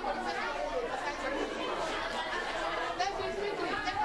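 Voices talking in a classroom: speech with a background of chatter.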